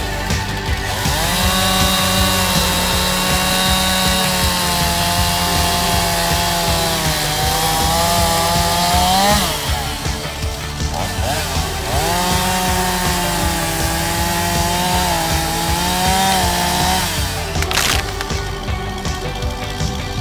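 Stihl two-stroke chainsaw cutting through a dead tree trunk in two long passes, its pitch sagging under load and rising as the bar comes free. A brief sharp noise comes near the end, with background music under it all.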